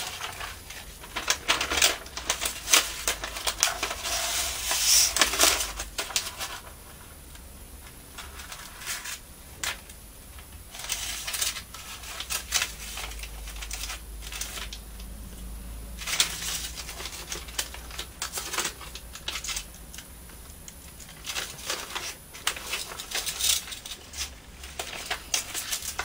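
Clear plastic sheet crinkling and crackling as it is handled and peeled away from paper wet with PVA glue, in irregular bursts with quieter stretches between; the first few seconds are the busiest.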